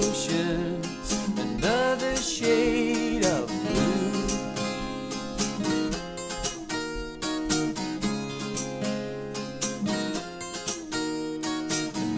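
Acoustic band performance: strummed acoustic guitars under a male lead vocal that sings a phrase over the first few seconds, then drops out, leaving the guitars alone until the voice comes back right at the end.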